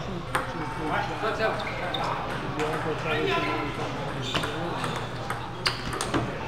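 Table tennis ball clicking off paddles and the table, a series of sharp, irregularly spaced clicks, the sharpest near the end, over the chatter of a busy hall.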